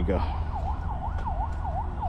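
A distant emergency-vehicle siren in fast yelp mode, its pitch sweeping rapidly down and up about four times a second, over a steady low rumble.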